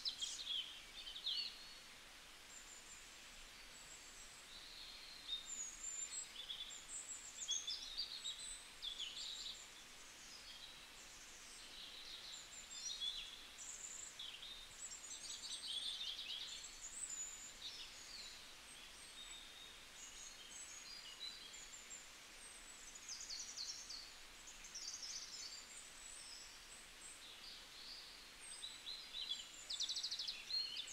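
Faint chirping of small birds: many short, high calls one after another, over a low steady hiss.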